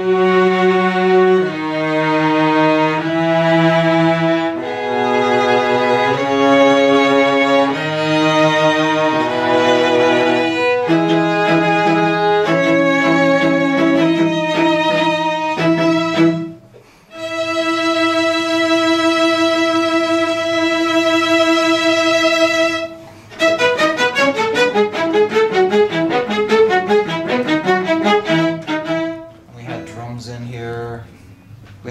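String quartet music, violins and cello bowing slow chords that change about every second. It breaks off briefly about seventeen seconds in, holds one long chord, then moves into quick, short notes near the end.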